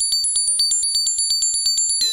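Doepfer A-100 analog modular synthesizer putting out a rapid, even train of clicks, about a dozen a second, under a few high steady tones.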